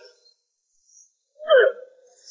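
A brief voiced grunt of effort about a second and a half in, a short sharp sound with a falling pitch, after near silence.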